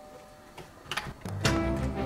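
A few sharp clicks as a front door is unlatched and opened, then background music comes in about a second and a half in and is the loudest sound.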